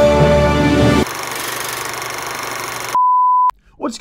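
Intro theme music ends about a second in and gives way to a softer hiss. About three seconds in there is a single steady beep lasting half a second, cut off with a click, and then a man starts talking.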